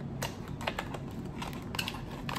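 A small cardboard product box being handled and opened in the hands: a few scattered light clicks and taps.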